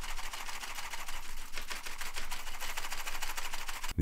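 A FlagK Iori mechanical keyboard being shaken: a fast, continuous rattle of many small plastic clicks as its loose, wobbly keycaps and Xiang Min KSB-C Blue Alps-clone switches knock about, a sign of its cheap build.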